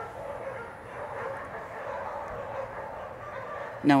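Several dogs barking without letup, going nuts, their barks and yips running together into a steady din.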